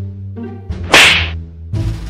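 Whip-crack sound effect about a second in, a short sharp swish, over background music with a deep, steady bass line.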